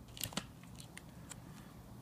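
Hard plastic card holders clicking against each other as cased trading cards are handled in a box: two quick light clicks, then a few fainter ticks.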